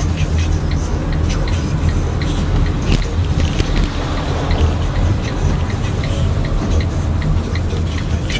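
Steady engine and road rumble inside a minibus taxi's cabin as it pulls over, with a regular light clicking typical of the turn signal.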